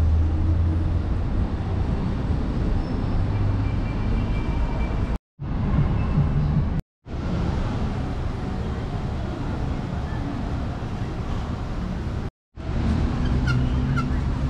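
Steady car and road-traffic noise with a strong low hum, broken by three brief silent gaps about five, seven and twelve seconds in.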